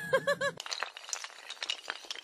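A cartoon character's laugh, cut off about half a second in, gives way to a rapid scatter of small glassy clinks and tinkles that thin out toward the end.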